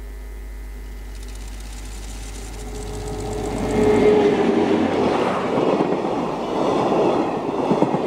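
A JR ED79 electric locomotive drawing near and passing close: it grows louder until it goes by about four seconds in. Blue passenger coaches then roll past, their wheels clattering on the rails. A low steady hum underneath stops as the locomotive arrives.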